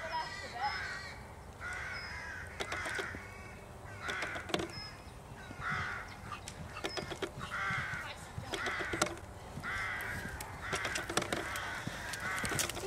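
Crows cawing over and over: about ten harsh caws, each about half a second long, some coming in quick pairs.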